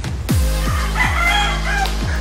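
A rooster crowing once, about a second long, over electronic background music with a steady bass and a fast kick-drum beat.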